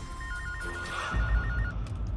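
Cordless home telephone ringing: one electronic ring, a fast warbling trill between two high tones, lasting about a second and a half.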